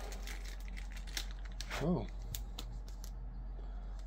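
Trading cards and their plastic sleeves being handled, a run of small clicks and rustles, over a steady low hum.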